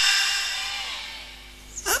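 Echo of a man's amplified voice dying away through a large outdoor PA system over about a second and a half, leaving a faint steady hum before the voice comes back near the end.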